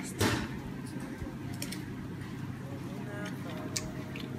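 A single short, crisp bite into a slice of firm persimmon about a quarter second in, then a steady low background hum.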